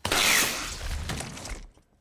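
A sudden messy crash of crockery and food, clattering and splattering, then dying away over about a second and a half.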